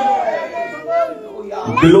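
Speech only: high-pitched voices speaking or calling out, their pitch sliding up and down, with a quieter moment in the middle.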